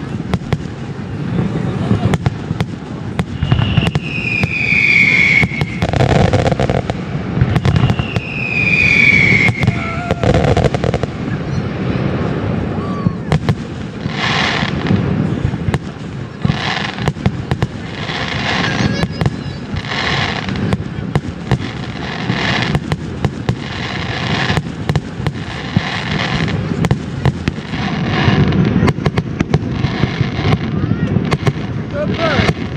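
Distant aerial fireworks show: repeated pops and bangs of bursting shells over a steady low rumble. Two falling whistles come early on, and in the second half a hiss pulses about every second and a half.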